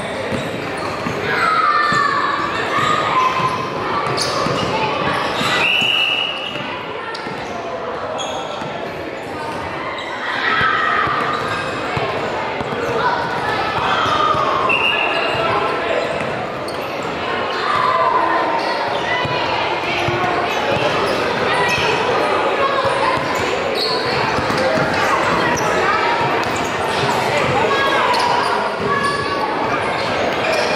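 A basketball being dribbled on a hardwood gym floor, amid shouts and chatter from players and spectators that echo around a large gym. Two short high-pitched squeaks cut through.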